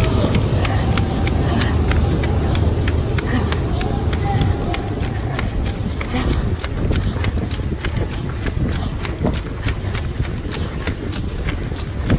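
Running footsteps, a regular beat of footfalls, under a heavy rumble of wind and handling noise on a phone microphone carried by a runner. Voices are heard now and then.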